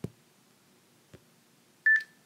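Interval timer's short, high electronic beep near the end, marking the switch from one interval to the next. A click comes at the very start and a faint tick about a second in.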